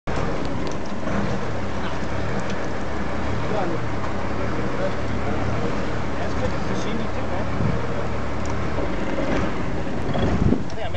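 Fishing boat's engine running with a steady low drone, under a haze of wind and water noise.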